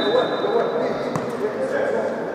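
Futsal ball kicked once, a sharp thud about a second in, amid players' voices echoing in a large sports hall. A steady high tone fades out about a second in.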